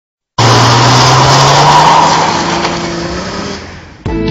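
Car sound effect: a loud car engine at high, steady revs over a heavy hiss. It cuts in abruptly just after the start and fades away over the last two seconds.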